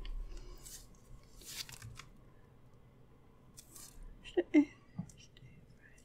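Pen writing on paper: short, faint scratching strokes of the pen tip as small numbers are written, in a few bursts with pauses between.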